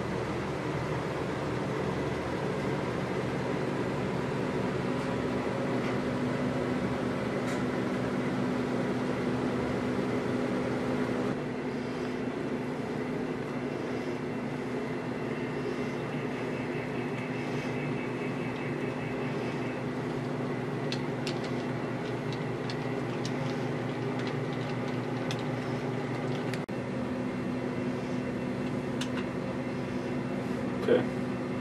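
HO scale model diesel switcher locomotive running on the layout with hopper cars: a steady, even electric hum, with scattered light clicks in the second half.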